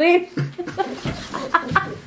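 A woman laughing hard, in short, broken fits.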